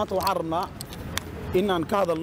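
Speech: a police officer reading a statement aloud in Somali, with a short pause in the middle.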